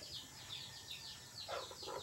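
Faint bird chirping: short, high, falling chirps repeated a few times a second. A brief louder sound comes about one and a half seconds in.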